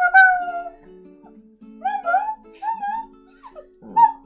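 Small dog howling on cue: one long call just after the start, then three shorter calls that rise and fall, over soft acoustic guitar music.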